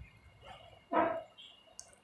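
A dog barks once, short and sharp, about a second in, with a fainter short call just before.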